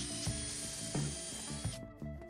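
Cordless drill boring a hole into a pine board: a steady high motor whine with the bit cutting wood, stopping abruptly near the end. Background music with a steady beat plays underneath.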